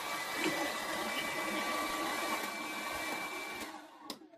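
Hair dryers and heaters running together with a steady rushing whir and a thin high whine, cutting out near the end as they are switched off.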